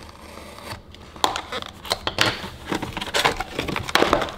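A sealed cardboard box of trading card packs being torn open by hand: irregular crinkles, rips and rustles of the wrapper and cardboard, starting about a second in.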